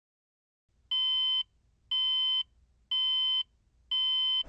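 Electronic warning-style beeps: four identical beeps, each about half a second long, repeating once a second, each a steady high tone with a lower tone sounding under it.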